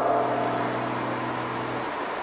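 A steady low drone of a few held tones, fading slightly near the end.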